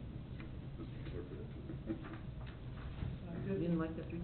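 Faint, low voices in a meeting room over a steady low hum, with a few scattered soft clicks.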